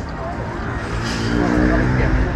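An engine running, with a steady low hum that grows louder about a second in, over background chatter.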